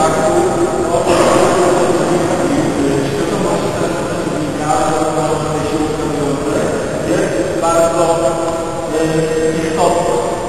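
A man's voice in short stretches, echoing in a large gym hall, over the steady background noise of the room.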